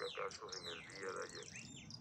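Small birds chirping: a quick run of short, falling chirps, several a second.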